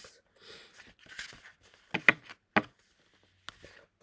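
Paper booklets being shuffled and moved about on a table: soft rustling of paper, then a few sharp knocks as the books are picked up and set down, the loudest about two seconds in.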